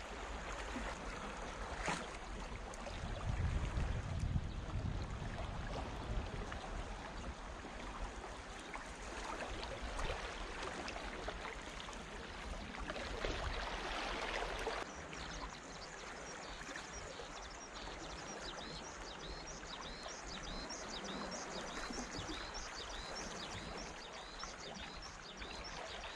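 Small waves lapping and trickling among the shoreline rocks on a calm sea, a steady watery hiss, with low rumbles about three to five seconds in and faint, quick high chirps through the second half.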